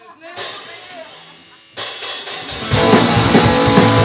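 A punk rock band starting a song live: opening guitar chords ring out first, then nearly three seconds in the drums and bass come in and the whole band plays loudly.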